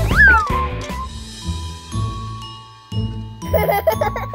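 Children's background music with cartoon sound effects: a quick sliding pitch that rises then falls near the start, then a sustained tinkling shimmer over held tones.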